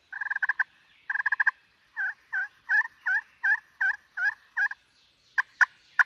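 Ceramic-over-glass turkey pot call in a walnut pot, played with a striker to imitate a hen: two short rolling purrs, then a run of about eight soft, evenly spaced yelps, then a couple of sharp clucks near the end.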